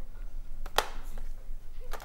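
Two sharp clicks about a second apart, with a fainter one between them, over a low steady room hum.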